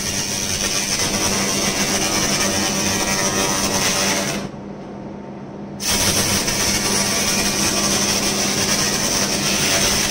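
A handheld 1000 W continuous laser cleaning gun firing on rusty steel plate, burning off the rust: a steady high hiss over a low machine hum. It cuts out for about a second and a half near the middle, then resumes.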